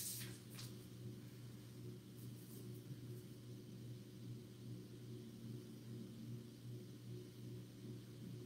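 Quiet room tone with a steady low hum, with a faint click or two near the start.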